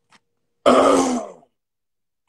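A man clearing his throat: one short, loud grunt, under a second long, a little after the half-second mark.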